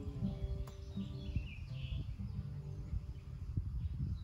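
Acoustic guitar played softly, a few ringing notes held and fading, with birds chirping briefly around the middle.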